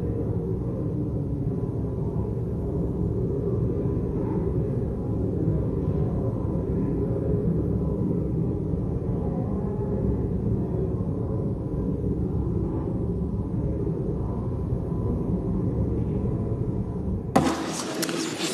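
Steady low murmur of a large chamber full of people talking quietly and moving about, with a deep room rumble. A sharp knock comes near the end as the sound turns brighter.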